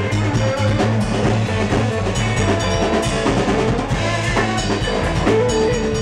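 Live instrumental band of electric guitar, electric bass and drum kit playing together, with a steady drum beat under the bass line and lead guitar.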